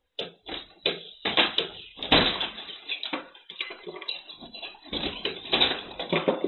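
Brown bear pushing and pulling at a wooden house door, the door knocking and rattling in irregular thuds, several a second. Heard through a security camera's microphone, which cuts off the higher sound.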